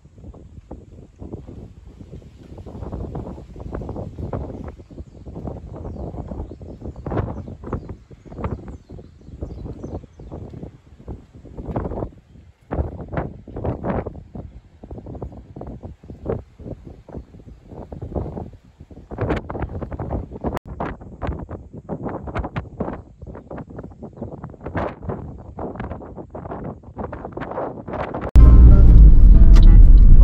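Wind buffeting the microphone in irregular gusts, with no steady tone. About 28 seconds in it cuts off abruptly to loud background music.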